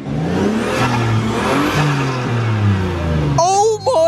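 Toyota Aristo's twin-turbo 2JZ straight-six, just fitted with rebuilt turbos, revved up once and let back down over about three seconds. The exhaust gasket is blowing slightly. A man starts talking near the end.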